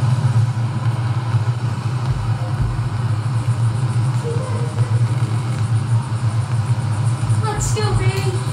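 Launch broadcast audio playing through a computer's speakers: a steady low hum over a faint, even background noise while the countdown clock runs.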